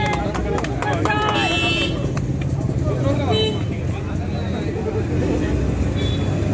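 Crowd of people talking and calling out at once, several voices overlapping, with a few sharp clicks in the first couple of seconds.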